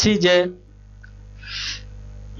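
A man's voice says one short word, then about a second and a half in comes a short, soft hiss of breath close to a headset microphone.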